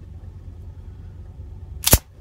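Ruger LCP II pistol's slide racked by hand, one sharp metallic clack near the end as it cycles and ejects a live round from the chamber. A steady low hum runs underneath.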